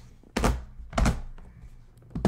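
Two knocks about two-thirds of a second apart from an aluminium briefcase being handled on a table.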